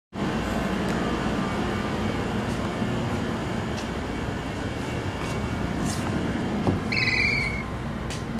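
Steady broad background noise with a few faint clicks, and a short high electronic beep near the end.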